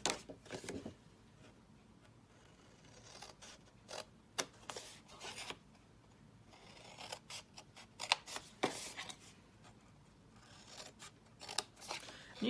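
Scissors snipping through cardstock, in several short runs of snips with pauses between them.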